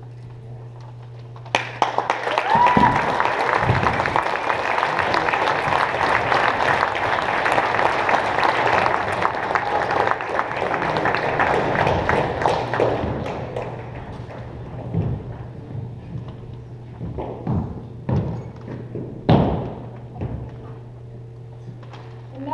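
Audience applauding for about eleven seconds in a large gymnasium, followed by a few separate thuds of drill boots stamping on the wooden floor as cadets march off.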